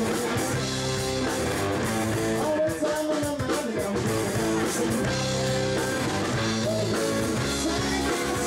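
Live rock band playing, amplified: electric guitars over bass guitar and drum kit, a steady full band sound with bending guitar notes.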